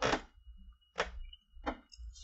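Close-up chewing of a toasted sandwich: three short crackly clicks, the first the loudest, spread over about two seconds.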